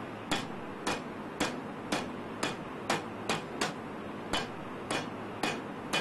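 A Chinese cleaver striking peeled ginger against a wooden cutting board, about two sharp knocks a second, crushing the ginger.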